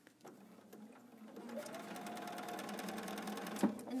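Electric sewing machine stitching. It starts slowly and picks up to a steady fast run of rapid needle strokes over a motor hum, with one sharp click near the end.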